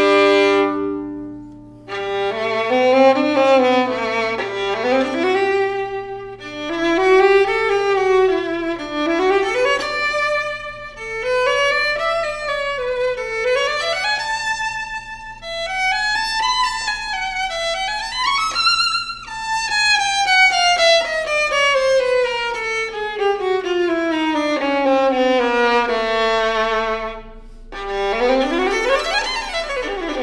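Fiddlerman Soloist violin played solo with the bow: quick runs rising and falling, climbing to a high note about two-thirds of the way through, then one long falling descent. There are brief pauses near the start and near the end.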